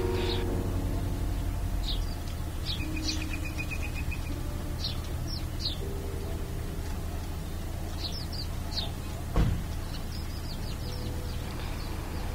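Outdoor ambience: small birds chirping in short scattered bursts, with a brief trill, over a steady low rumble. A single thump comes about nine and a half seconds in.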